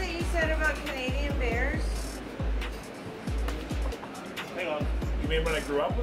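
Electronic background music with deep bass notes that fall in pitch on the beats and a wavering, voice-like melody above them.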